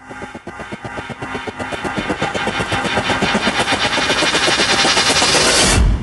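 Intro sound effect: a rapid run of ticking percussion that grows steadily louder, ending in a whoosh with a low boom near the end.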